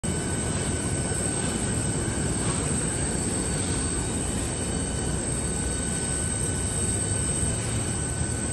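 Steady low rumble of airport terminal background noise heard from inside at the gate windows, unchanging throughout, with a faint steady whine above it.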